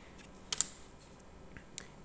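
A few sharp plastic clicks as a laptop and a plastic dummy card are handled: two close together about half a second in, then two fainter ones near the end.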